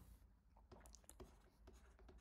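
Faint scratches and light taps of a stylus writing on a tablet screen, over near silence.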